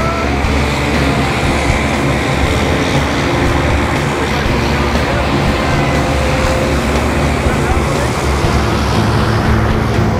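A propeller jump plane's engine running steadily close by, with indistinct voices over it.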